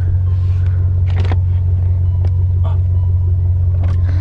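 Steady low rumble of a car's idling engine heard inside the cabin, with a couple of faint knocks.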